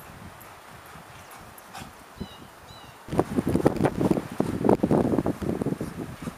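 Outdoor yard ambience with a low rustle and a couple of faint bird chirps. About halfway through it gives way suddenly to much louder, gusty wind buffeting the microphone.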